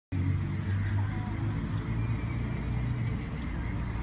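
Steady low rumble of a vehicle engine running, with a constant hum and faint background noise and no music yet.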